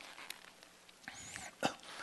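Faint rustle of thin Bible pages being turned by hand, with a faint high squeak about a second in and a short spoken syllable near the end.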